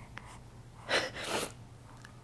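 A baby's two short breathy puffs of breath, about a second in and again half a second later.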